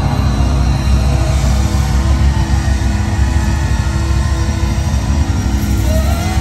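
A live rock band (drums, electric guitars and keyboards) playing loudly through a concert sound system, heard from within the crowd, with heavy bass.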